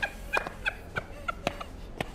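A bird's short, sharp calls, repeated several times at a few a second.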